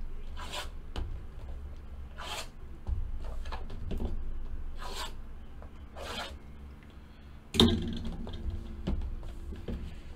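A small blade slitting the plastic shrink wrap and seals on cardboard trading-card boxes: several short scratchy rasps, with a knock about seven and a half seconds in.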